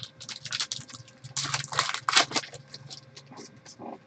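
Topps Finest card pack wrappers crinkling and cards being shuffled by hand: a quick, irregular run of crackles and rustles, busiest in the middle, with a faint steady hum underneath.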